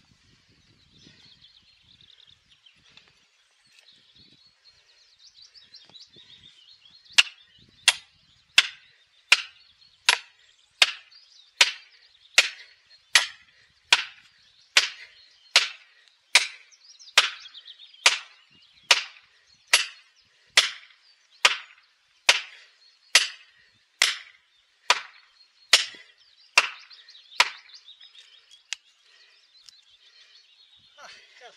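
A long-handled hammer driving orange plastic felling wedges into the saw cut of a large conifer, about thirty sharp strikes at a steady pace of roughly three every two seconds, to tip the tree over. Birds sing faintly throughout.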